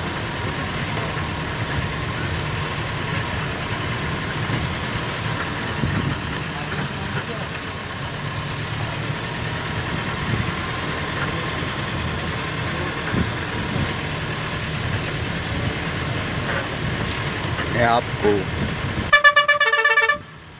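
Steady engine and road rumble of a vehicle being driven, heard from inside it. Near the end a horn sounds in quick pulses, the loudest sound here.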